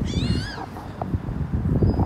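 A cat gives one high-pitched meow right at the start, its pitch rising and then falling over about half a second, over a steady low rumble.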